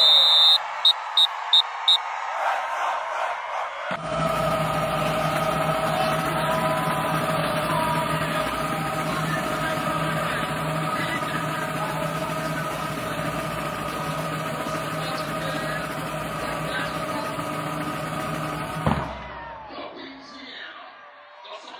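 A drum major's whistle: one long blast, then four short sharp blasts, the signal to the marching band. From about four seconds in, a steady wash of band music and stadium crowd noise.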